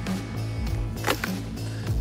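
Background music with a steady low tone; about a second in, a sharp snap as a crocodile's jaws clamp shut on a leg of ham.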